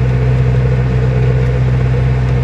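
Mercedes-Benz 608 truck's four-cylinder diesel engine running steadily at road speed, heard from inside the cab with a constant low hum and road noise.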